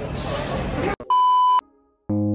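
About a second of busy shopping-mall background noise with faint voices, then a sudden cut to a steady electronic bleep tone about half a second long. The bleep is a sound effect added in the edit, and it cuts off sharply into silence.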